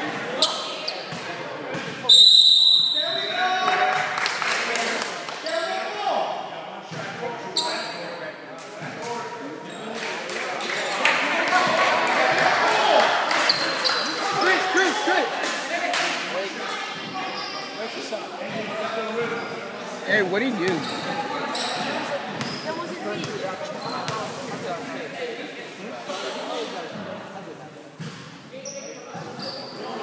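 Basketball game in a gym: a ball bouncing on the hardwood floor again and again, with players and spectators talking and calling out, all echoing in the large hall. A referee's whistle blows sharply about two seconds in.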